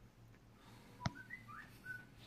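A faint click about a second in, followed by four short whistled chirps, each a brief note that glides up or holds steady.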